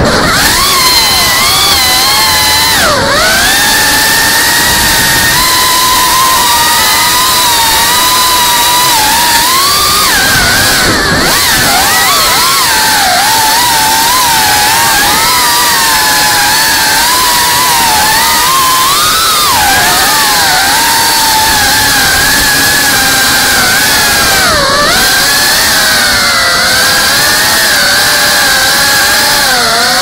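FPV quadcopter's brushless motors and propellers whining loud and close through the onboard action camera's microphone. Several tones rise and fall together with the throttle, over a dense rushing noise, dipping briefly a few times as the throttle is chopped. The quad is flying on what the uploader calls a bad PID tune.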